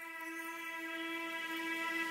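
A single held electronic note with even overtones, slowly swelling in loudness: the fade-in of background music.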